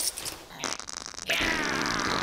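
Cartoon sound effect of a character defecating: a buzzing, rattling fart about half a second in, then a louder wet squelching stretch with falling pitch through the second half.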